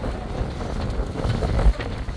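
Open-sided safari game-drive vehicle driving on a dirt road: a low engine and road rumble with wind buffeting the microphone. A louder low thump comes near the end.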